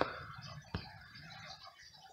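Quiet room tone with a single faint click about three-quarters of a second in.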